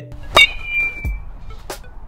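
A sharp hit about half a second in, followed by a high ringing tone that fades over nearly a second, over background music; a softer click comes near the end.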